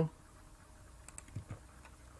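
A few faint clicks of computer keyboard keys being pressed, about a second in.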